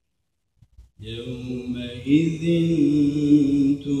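Man reciting the Quran in the melodic, chanted style of a mosque recitation, beginning about a second in after a short pause between verses and holding long, drawn-out notes.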